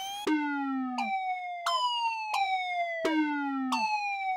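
Software synthesizer emulating the Roland Alpha Juno-1 playing a repeating pattern of bright notes, about six in all. Each note starts sharply and slides down in pitch, and a lower sliding note sounds under the first and fifth.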